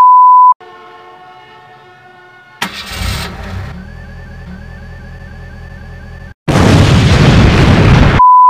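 An edited sound collage. It opens with a short, loud single-pitch test-tone beep over colour bars, then a couple of seconds of steady electronic tones. A sudden boom follows, with a rumbling, car-like noise carrying a repeating rising chirp, and near the end a burst of loud hissing noise.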